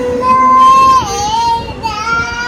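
A young child singing long, high held notes, with the pitch dropping to a slightly lower note about halfway through.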